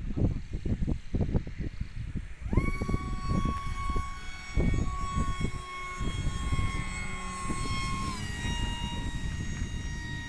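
A radio-controlled P-38 model plane flying past, its motors giving a steady whine that comes in about two and a half seconds in and drops slightly in pitch as the plane passes, about eight seconds in. Gusty wind buffets the microphone throughout.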